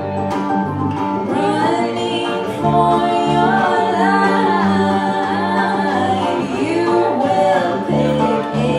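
Live folk-bluegrass band playing: a woman's lead vocal over strummed acoustic guitar, mandolin and upright bass, with the singing coming in about a second and a half in.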